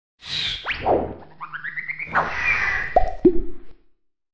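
Cartoon-style sound effects of an animated logo intro: quick swishes and pitch sweeps, a short run of notes stepping upward, then two plopping blips that drop in pitch near the end.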